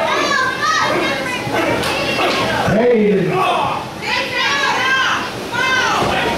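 Children in the audience shouting and yelling in high-pitched voices, in a large echoing hall, with a deeper adult shout about three seconds in.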